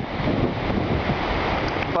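Ocean surf washing in on a sand beach, mixed with wind buffeting the microphone: a steady rushing noise.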